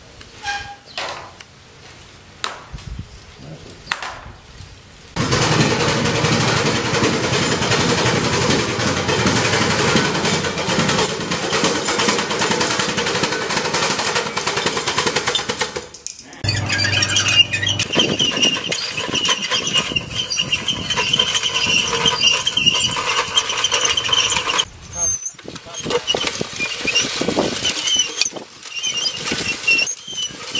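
A small chain-driven seeder being run by hand, its drive chain, sprockets and seed-metering mechanism clattering and squeaking. This comes in two long runs with a brief break between them; the second run carries a thin squeal.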